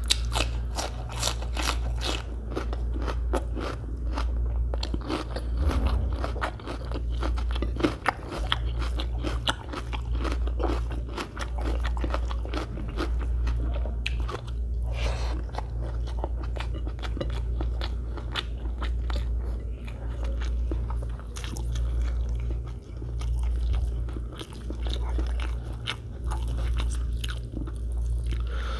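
Close-miked eating: crunching bites of raw onion and chewing of biryani rice, with many sharp crunches throughout. A steady low hum runs underneath.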